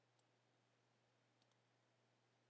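Near silence, broken by faint computer mouse clicks: a single click about a quarter of a second in and a quick double click about a second and a half in.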